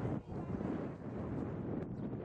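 Wind buffeting the camera microphone: an uneven low rumbling noise.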